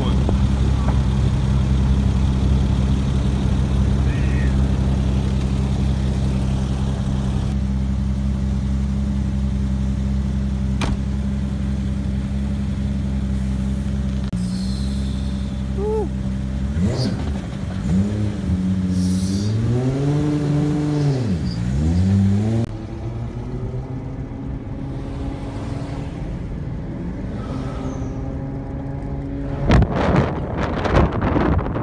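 A car engine idling steadily, then revved a few times past the middle, the pitch climbing and falling back with each blip, before settling to a lower, quieter idle.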